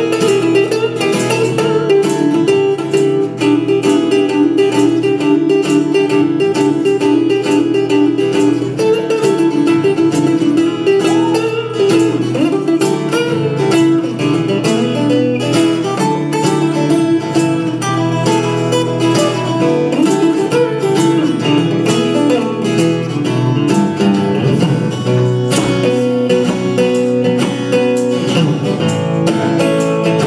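Two acoustic guitars playing an instrumental break in a country song, a steady strummed rhythm with no singing.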